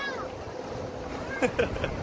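Open utility cart driving along: a steady low rumble and faint hum, with wind on the microphone.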